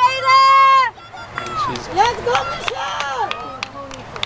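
Spectators shouting encouragement to passing runners. One loud, high, long-held yell comes in the first second, then several shorter yells rising and falling in pitch.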